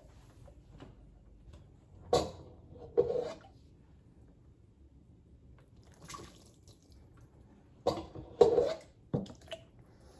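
Hot water poured from a plastic cup onto a leather baseball glove over a sink, splashing and dripping off the leather in several short spells, the last cluster near the end.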